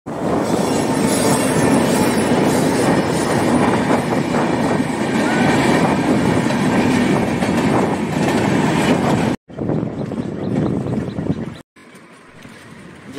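Steel wheels of a hand-pushed railway inspection trolley rolling along the rails: a loud, continuous rumbling clatter that breaks off suddenly about nine and a half seconds in and again near the end.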